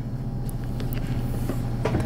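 A few faint clicks as the folded sides of a metal credit-card knife are pressed down and lock into place, over a steady low hum.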